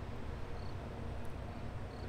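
Steady low rumble with a faint even hiss of background ambience, with no distinct events.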